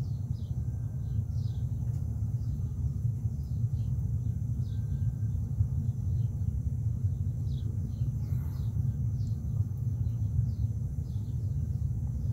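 A steady low rumble with faint bird chirps over it: short, high, falling notes repeating every second or so.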